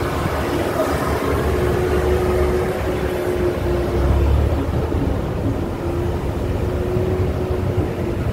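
Car interior sound while driving slowly: a steady low engine and road rumble with a faint steady hum, heard from inside the cabin.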